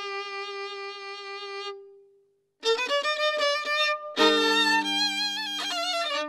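Background music: a solo violin plays a slow tune. A long held note fades out about two seconds in, there is a brief pause, and then the violin starts a new phrase, with two notes sounding together from about four seconds in.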